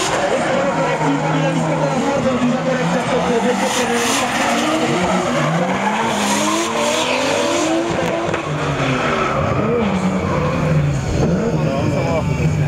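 Two Nissan drift cars running in tandem, their engines revving up and down over and over as they slide, with tyres skidding and squealing through the drifts.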